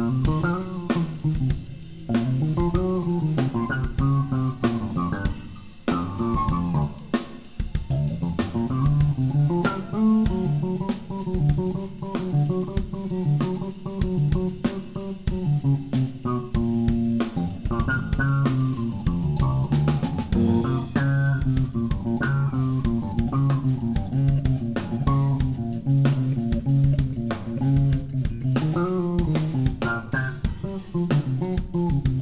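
Live rock band playing an instrumental passage: electric guitar lines over a repeating bass guitar line and a steady drum-kit beat, without vocals.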